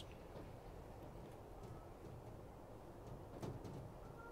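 Very quiet: a faint steady background hiss, with a soft, brief rustle of loose potting compost being handled about three and a half seconds in.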